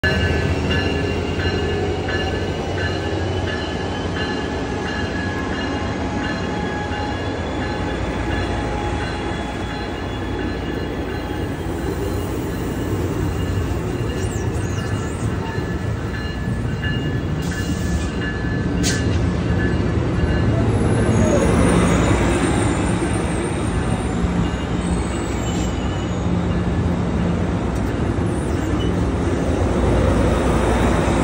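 Amtrak passenger train with a Siemens diesel locomotive and double-deck coaches at a station platform: a steady low rumble, with thin high whines in the first half and the train growing louder about two-thirds of the way through as the coaches roll past. There is one sharp click partway through and faint high wheel squeals after it.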